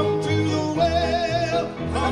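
Southern gospel quartet singing in close harmony on long, wavering held notes, backed by piano, acoustic guitars and upright bass.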